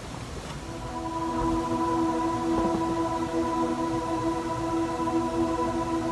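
Steady, held musical tones, an ambient backing pad for a worship song, fading in about a second in and sustaining without any plucked or strummed attacks.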